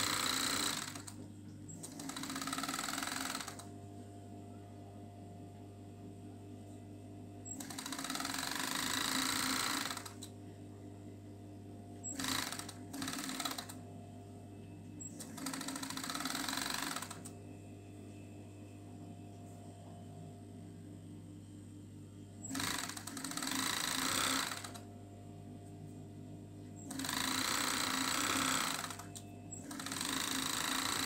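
Industrial overlock sewing machine stitching fabric in repeated runs of one to three seconds, some only a brief blip. Its motor keeps humming steadily in the pauses between runs.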